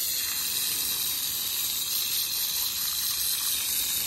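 Garden hose spray nozzle running steadily, spraying water onto a horse's neck and coat: an even, continuous hiss of spray.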